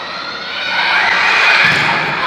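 Volleyball spectators' crowd noise, a blurred din of many voices that swells from about half a second in while the rally goes on.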